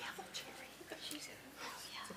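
Faint, low murmur of people in the audience talking quietly among themselves in a meeting room.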